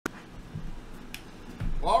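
A sharp click at the very start and two faint clicks about a second in, over low thuds, then a man's voice begins near the end.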